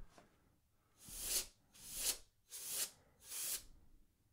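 Canned air duster spraying through its extension straw in four short hissing blasts, each about half a second long, blowing dust off an LCD panel's glass.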